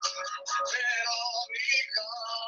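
A man playing an acoustic guitar, with singing, heard through a video call's audio.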